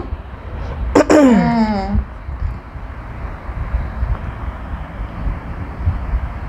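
A woman's short vocal 'hmm' falling in pitch about a second in, followed by a steady low background rumble.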